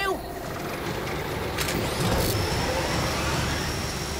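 Cartoon sound effect of a garbage compactor's giant screw augers grinding: a dense mechanical rumbling noise that grows louder about halfway through, with a thin high whine joining it.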